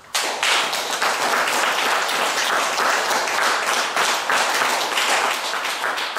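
Audience applauding, breaking out suddenly at the start and holding steady.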